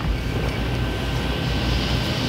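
Steady low background rumble at an even level, with no speech over it.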